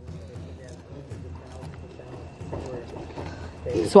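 A steady low hum with faint voices murmuring in the background and a few soft clicks; a thin steady tone sounds through the second half.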